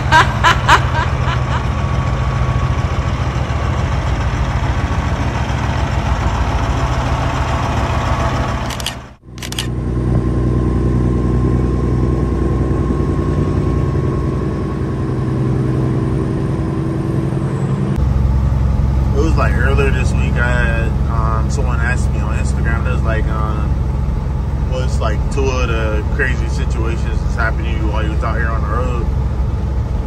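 1999 Peterbilt 379 semi truck's diesel engine running steadily. There is a short break about nine seconds in, and the tone shifts lower about halfway through.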